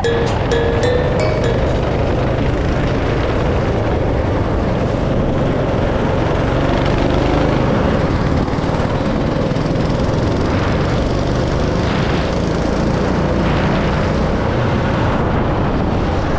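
Go-kart engine running steadily at racing speed, heard from the driver's seat together with road and wind noise.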